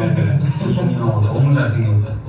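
Young men talking in Korean.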